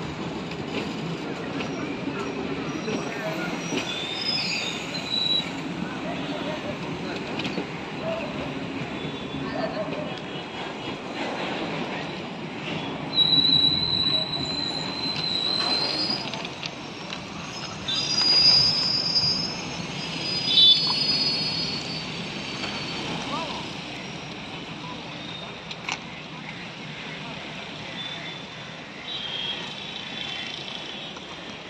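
Passenger coaches of an Indian Railways express train running past close by as it arrives at a station. Their wheels on the rails give a continuous rumble, with high-pitched squeals at about 13 and 18 seconds in. The sound fades over the last several seconds as the final coach moves away.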